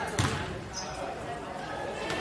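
A basketball bouncing once on a hardwood gym floor, a single thud just after the start, with faint voices in the hall behind it.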